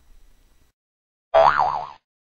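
A loud cartoon "boing" sound effect: a springy tone that starts suddenly near the end and wobbles up and down in pitch as it fades.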